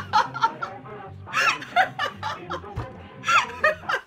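A woman laughing hard in repeated bursts, over music playing in the background.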